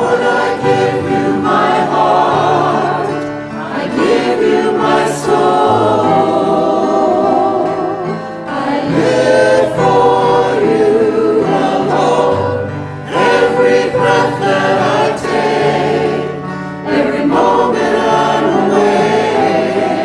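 Church choir and worship singers singing a gospel hymn together, with piano accompaniment.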